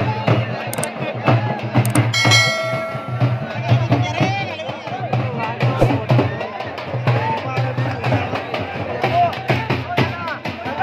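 Halgi frame drums beaten in a fast, steady rhythm, with crowd voices shouting over them. A brief held note sounds about two seconds in.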